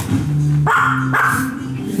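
A dog barking twice, about half a second apart, over background music.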